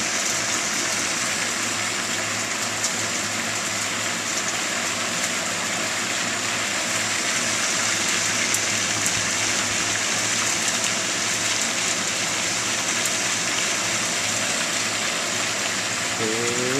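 Steady rushing noise of water, with a few faint ticks scattered through it.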